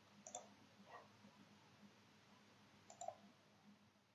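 Near silence broken by three faint, short clicks.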